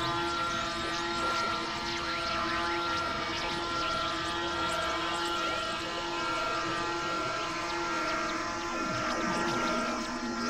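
Layered experimental electronic drone music: several held tones sounding together at a steady level, with a dense scatter of short swooping, chirping glides on top.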